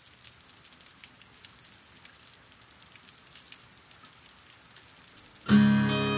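A faint, even crackling noise with small clicks opens a track, then a guitar chord is struck suddenly, loud, about five and a half seconds in and rings on.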